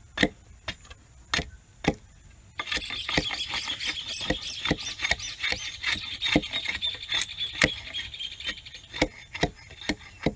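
Hand axe chopping at the end of a green wooden stick held on a log, trimming it into a tool handle: short wooden knocks about two to three a second, with a short pause early on. From about two and a half seconds in, a dense high chirping sets in behind the strikes.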